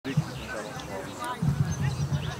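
Indistinct voices of people talking, with a low rumbling thud setting in about a second and a half in.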